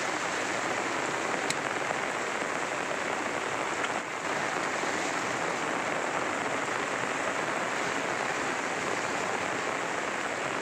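Steady noise of heavy rain mixed with choppy, breaking waves, with no distinct events.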